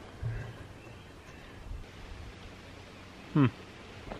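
Quiet outdoor background with one soft, low thump just after the start; a man gives a short 'hmm' near the end.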